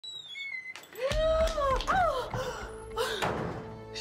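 A heavy thud about a second in, followed by a held low rumble. Sliding pitched tones and several sharper hits come after it, over dramatic music.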